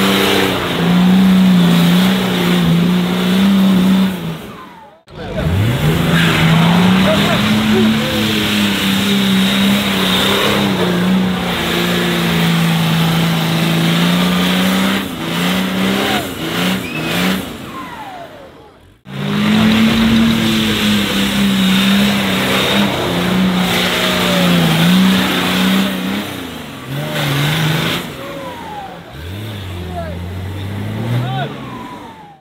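Off-road 4x4's engine revved hard and held at high revs while the truck claws up a deep mud trench. The engine pitch steps up and down, climbs back up after a brief break, and settles lower near the end. Crowd voices and shouts sound over it.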